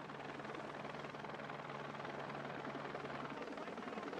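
Helicopter approaching, its rotor chop growing slowly louder, over a low steady hum that stops about three seconds in.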